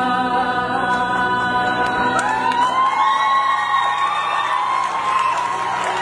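Live musical-theatre singing over a backing track, with one long held note that rises into place about two seconds in, and the audience starting to cheer and whoop over it.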